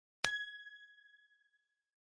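A single bright, bell-like ding: one strike about a quarter second in, ringing with one clear pitch and higher overtones and dying away over about a second and a half. It is an edited-in transition sound effect.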